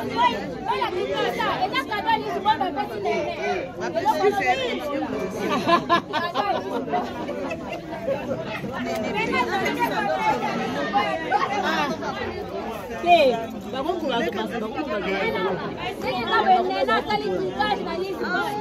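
Several people talking at once: lively, overlapping chatter of a seated group.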